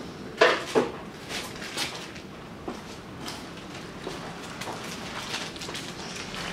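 Metal tools and parts handled on a workbench: two sharp metallic clinks about half a second in, then a few fainter clicks and rattles.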